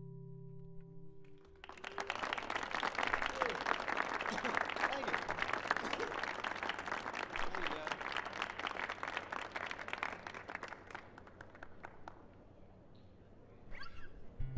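Audience applauding at the end of a song, starting about two seconds in and dying away near the end, after the last acoustic guitar chord rings out.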